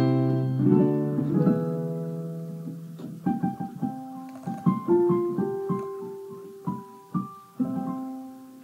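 Electric keyboard played: a chord held and left to fade over the first few seconds, then a slow line of single notes and chords from about three seconds in.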